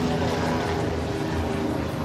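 A steady low engine drone with a hum of several pitches.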